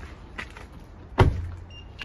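A car door, the Subaru Forester's, slammed shut once about a second in: a sharp bang with a short low thud ringing after it.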